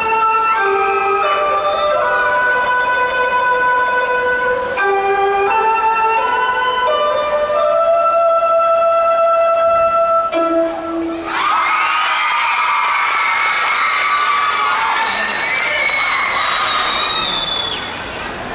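Dance-routine music over the PA playing a slow melody of long held notes; a little over ten seconds in the music stops and the audience bursts into cheering and shrill shouting, which fades near the end.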